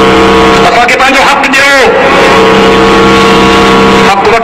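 A man's voice through a loud public-address system: a long held, drawn-out tone, a short burst of words about a second in, then another long held tone.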